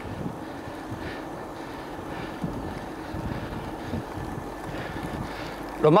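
Steady wind noise on a moving microphone over a low, even rumble of travel along the road.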